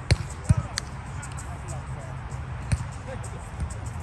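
Several sharp thuds of a volleyball being struck by hand: three close together in the first second and one more about two and a half seconds in.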